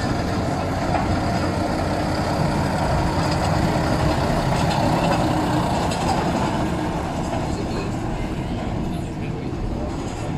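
Snowdon Mountain Railway Hunslet diesel locomotive No. 10 running as it pushes its passenger carriage out of the station. The engine and rolling noise is steady, grows louder toward the middle and then eases off.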